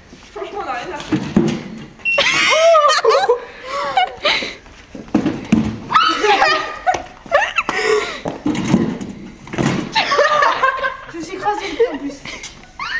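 Young people laughing in several loud bouts, with high voices rising and falling in pitch, mixed with indistinct talk.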